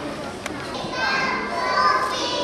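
Applause dying away, then the high-pitched voices of a group of young children calling out, starting about a second in.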